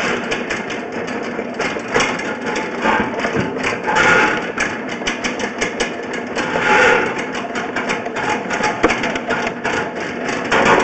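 Sewer inspection camera head clattering and scraping as it is pushed through a drain pipe, a dense run of irregular clicks and knocks that swells louder every two to three seconds.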